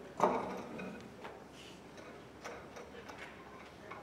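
A few light knocks and clicks, roughly one a second, from string players handling their instruments and stands. The loudest comes just after the start and rings briefly. No music is playing yet.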